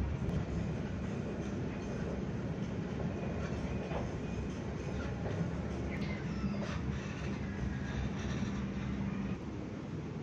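Dubai Tram car running, heard from inside the passenger cabin: a steady rumble of wheels on rail under a low, even hum, with a few faint squeaks and clicks. The hum fades out shortly before the end.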